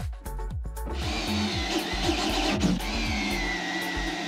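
Background electronic dance music with a steady beat. From about a second in, a power drill cutting into the sheet-metal side of a battery cabinet joins it, its high whine sliding down in pitch as the bit bites.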